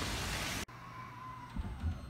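Heavy rain falling on an umbrella and the water, cut off abruptly under a second in. After that comes the much quieter inside of a moving train carriage, with a faint steady whine and a couple of low thumps.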